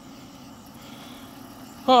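Steady low hum of a vehicle engine running, with a man's voice starting near the end.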